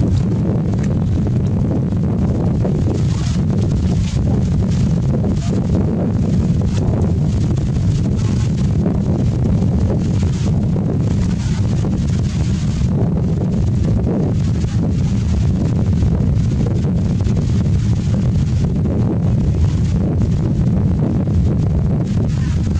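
Wind buffeting the microphone: a loud, steady low rumble, with faint scattered clicks and splashes of water above it.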